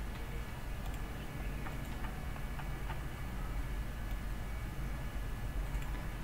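A few faint clicks from a computer mouse as the view scrolls, over a steady low hum and hiss.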